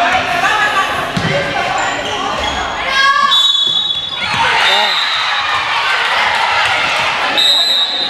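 Indoor volleyball play in a reverberant gym: players and spectators calling out over one another while the ball is struck. Short, high, shrill tones sound about three seconds in and again near the end.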